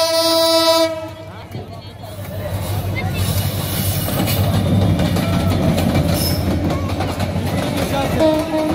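Diesel locomotive horn sounding one long note that cuts off about a second in, followed by the rumble and rail clatter of a passing intercity train, growing louder over the next few seconds.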